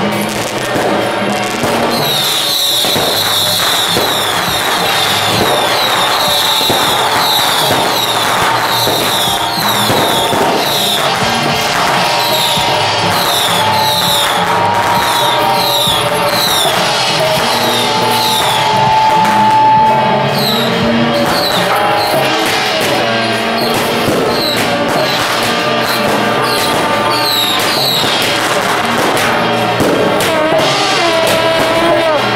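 Firecrackers crackling continuously in a long string, with music playing at the same time. A high chirp repeats about once or twice a second through most of it.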